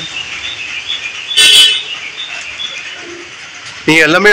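Birds chirping faintly over outdoor background noise, with one louder, brief call about one and a half seconds in.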